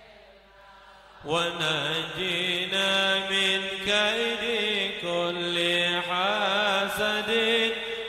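A man's voice chanting an Arabic munajat (devotional supplication) through a microphone, in long held notes with wavering ornamented turns. It begins a little over a second in, after a short lull.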